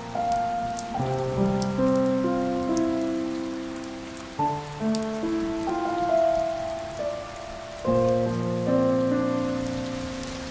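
Steady rain with scattered sharp raindrop ticks, mixed with slow instrumental music of held notes whose chords change every second or few.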